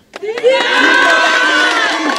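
A crowd of men shouting and cheering together. It starts about half a second in as one loud, sustained group shout of many overlapping voices.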